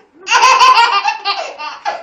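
High-pitched, child-like laughter: a fast run of giggles, with one last short burst near the end.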